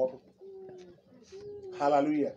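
A dove cooing: two low, steady coo notes, each about half a second long and slightly falling, fainter than the voice that comes in near the end.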